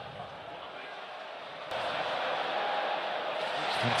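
Stadium crowd noise under the match broadcast: a steady hum of fans that jumps abruptly louder about two seconds in.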